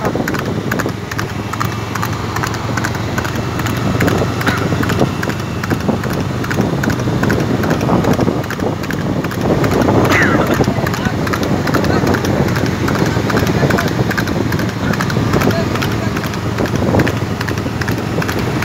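Ponies galloping on an asphalt road: a rapid, continuous clatter of hoofbeats from several animals, with voices over it.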